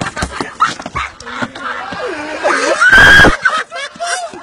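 A group of boys laughing hysterically in squeals and yelps, with the loudest, high-pitched shriek about three seconds in.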